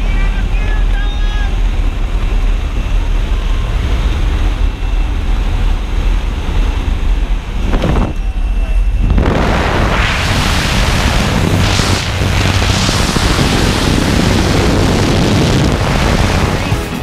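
Loud wind rush and a steady engine drone through the open door of a skydiving plane in flight, with faint voices near the start. About nine seconds in, the wind noise turns louder and brighter.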